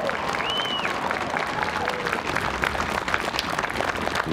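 Outdoor audience applauding, a dense steady patter of many hands clapping.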